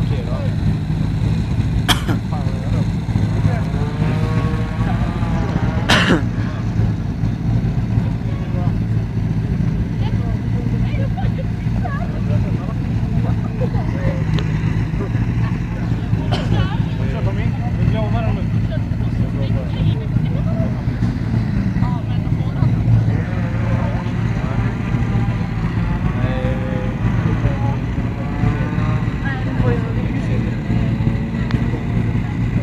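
Car engines idling steadily, a low even hum, with people talking over them and two sharp clicks in the first few seconds.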